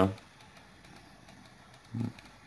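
Quiet room tone in a pause between phrases of a man's speech. The speech tails off at the very start, and a brief voiced murmur comes near the end.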